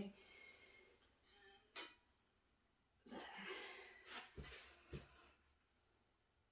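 Quiet handling sounds as a long metal ruler is moved and laid across a canvas: a faint click, then a soft hiss lasting about a second, and two soft thumps near the end.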